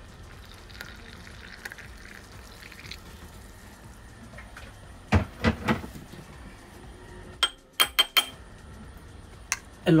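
Hot water poured from a metal kettle into a small glass of ground coffee, a faint steady pour. Later come a few louder knocks about five seconds in, then several short, sharp clinks of a metal spoon against the glass.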